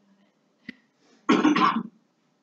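A person coughing twice in quick succession, loud and close, after a brief click.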